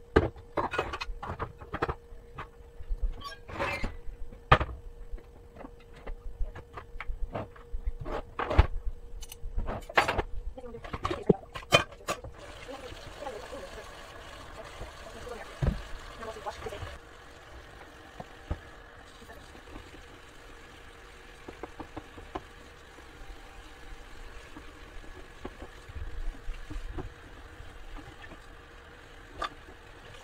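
Dishes and utensils clinking and knocking, many sharp strikes in quick succession, as they are handled at a plastic dish rack. About twelve seconds in the clatter stops and a kitchen tap runs steadily into the sink.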